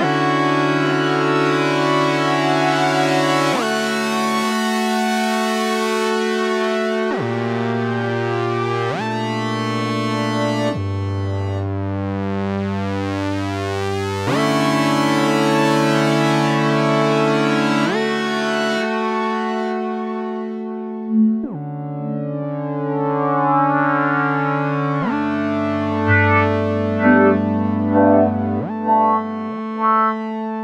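GForce OB-E software synthesizer, an Oberheim SEM emulation, playing sustained polyphonic chords that change every few seconds. Its filter cutoff, modulation depth and resonance are being turned, so the tone swells bright and closes dark, with the delay effect on.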